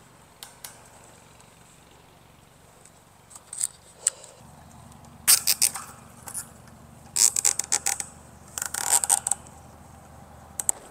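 Plastic zip ties being pulled tight around a steel rebar rod and cattle panel wire, in several short bursts of rapid ratcheting clicks from about three seconds in.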